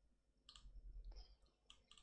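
A few faint computer mouse clicks against near silence.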